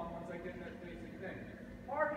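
A person talking; the words are indistinct.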